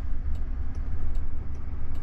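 Cabin noise inside a Waymo Jaguar I-Pace electric taxi: a steady low rumble with a faint hum and light, regular ticking.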